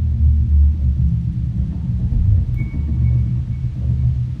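Double bass played deep in its low register, sustained low notes that swell and ease in loudness, with little sound above them.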